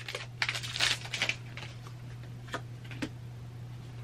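Foil Pokémon booster pack wrapper crinkling and tearing open in a quick flurry of crackles during the first second and a half, then a few faint clicks of the cards being slid out and handled.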